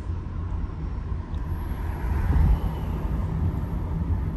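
A car's engine and tyres heard from inside the cabin while it drives: a steady low road rumble that swells a little about halfway through.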